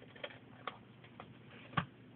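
A few light, irregularly spaced clicks and taps from hands handling things on a craft desk, with the loudest, a small knock, near the end.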